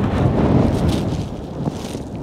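Strong wind buffeting the microphone: a loud, low rush that eases a little toward the end.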